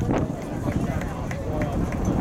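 Indistinct voices of players and onlookers calling out across an outdoor soccer field, too distant to make out, over a steady low rumble.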